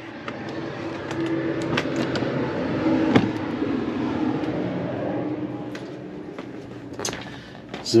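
Motorhome engine running steadily at low speed, with a few faint clicks over it.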